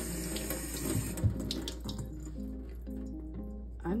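Tap water running over a sticker-covered water bottle held under the faucet in a stainless-steel sink, tapering off about halfway through, with a thump about a second in. Soft background music plays throughout.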